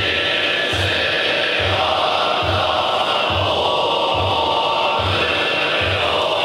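Zen Buddhist monks chanting a sutra in unison, a dense, continuous drone of male voices, over a steady low beat that keeps time about every 0.8 seconds.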